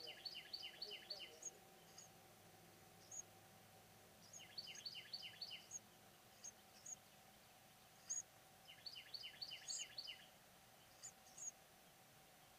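Small birds chirping: three quick runs of five or six high chirps, about four seconds apart, with single high peeps scattered between them.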